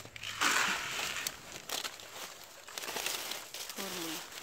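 A plastic bag of granular fertilizer crinkling and rustling as it is handled. The rustle is loudest in a burst near the start, then gives way to scattered small clicks and crackles.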